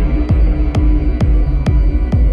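Techno playing in a DJ mix: a four-on-the-floor kick drum hitting about twice a second, four beats in all, under a held synth tone.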